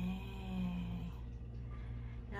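A woman humming a long, even "mmm" that stops about a second in. A steady low hum runs underneath.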